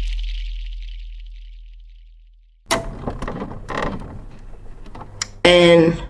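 The tail of a synthetic intro sound effect fades out: a deep hum and a high glassy shimmer die away over about two and a half seconds. Then the room sound comes in, with small clicks and handling noises. Near the end a short voiced sound is heard.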